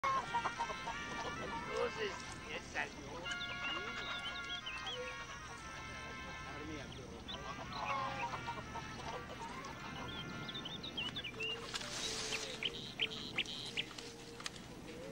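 Farmyard chickens clucking and squawking in short pitched calls, with small birds chirping higher up and a short rush of noise about twelve seconds in.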